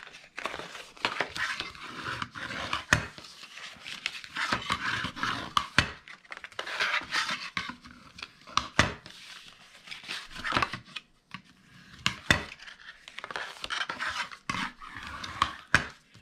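Cardstock being folded along its score lines and burnished flat: irregular papery scraping and rustling, broken by many sharp taps and clicks against the cutting mat.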